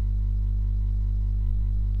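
Steady low electrical mains hum with a buzzy series of overtones, constant and unchanging.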